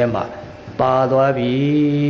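A Buddhist monk's voice, amplified through a microphone, intoning one long drawn-out chanted syllable at a steady pitch that rises slightly near the end, after the end of a spoken phrase and a brief pause.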